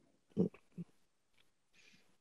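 A person's two short, low grunt-like vocal sounds, such as an 'mm', about half a second apart, followed by a faint breath near the end.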